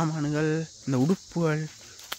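A steady, high-pitched insect chorus in woodland, under a man's voice talking in short bursts.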